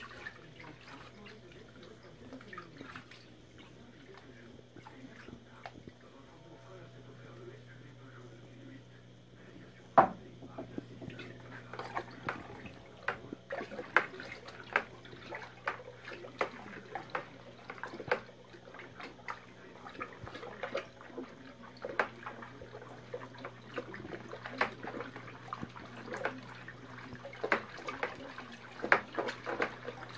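Mead being stirred in a plastic bucket to dissolve added sugar: liquid sloshing and splashing, with sharp knocks and slaps coming thick and fast from about a third of the way in, the loudest one about ten seconds in. A low steady hum runs underneath.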